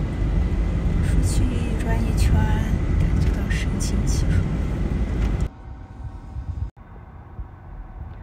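Road and engine rumble inside a moving car's cabin, loud and low, with a voice over it. About five and a half seconds in it drops abruptly at an edit to much quieter cabin noise.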